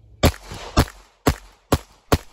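Four handgun shots fired in quick succession, about half a second apart, each a sharp crack with a short ring-out.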